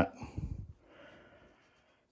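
A faint breath after speech, fading out, then silence about halfway in.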